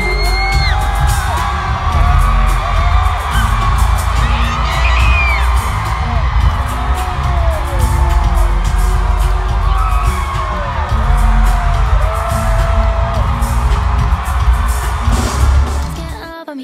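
Live pop concert in an arena: a female singer over a loud, bass-heavy backing track, with the crowd cheering and whooping, as heard from the audience.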